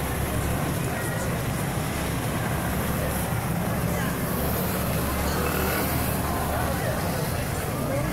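Busy street sound: a steady low engine hum under the indistinct talk of people nearby.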